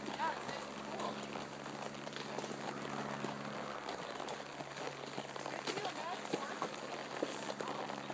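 Horses walking on a dirt trail, their hooves falling softly and irregularly, with a faint steady low hum that stops about halfway through.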